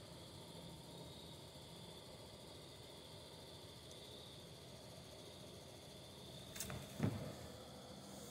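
Quiet room tone with a steady faint hiss and a thin high whine. Near the end, a sharp click and then a short, louder thump.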